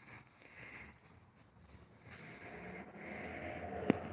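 Quiet room tone with faint low rustling noises and one sharp click just before the end.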